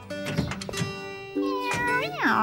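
Cartoon cat meowing near the end, a drawn-out cry that rises and falls, over light background music.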